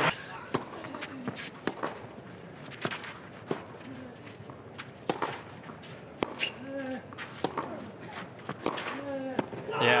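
Tennis ball sharply struck by rackets and bouncing on a clay court, a crisp impact every half-second to second, over a low crowd murmur. Crowd noise swells just before the end.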